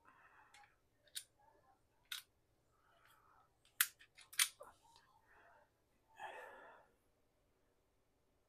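Handling of a Taurus Millennium G2 (PT111) 9 mm pistol: a few sharp metallic clicks as the laser bore-sight cartridge is set into the chamber and the slide is let forward, with soft rustling between them, the two loudest clicks a little over half a second apart near the middle. A brief rustle of handling follows near the end.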